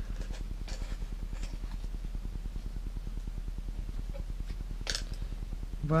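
Steady low hum in the background, with a few faint soft clicks and rustles as tweezers press and release a small piece of paper, the clearest near the end.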